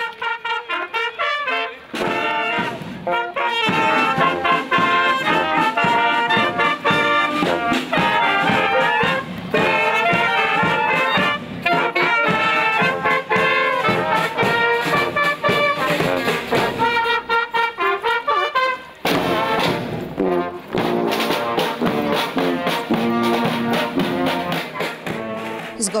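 Brass band (orkiestra dęta) of trumpets and trombones playing a tune. The music breaks off abruptly about three-quarters of the way through and a different passage starts.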